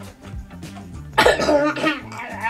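Background music with a steady bass line, then about a second in a young girl's short, harsh, noisy vocal burst, like a cough, lasting under a second.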